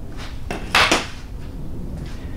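A single short clatter of hard gear being handled, about three quarters of a second in, over low room noise.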